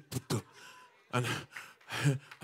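A man speaking into a microphone: a couple of short vocal sounds, then a soft hissing breath for about half a second, then a spoken "and".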